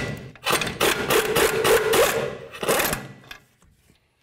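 Air impact wrench rattling as it spins the upper ball joint nut off the steering knuckle: one run of about two seconds, then a short second burst.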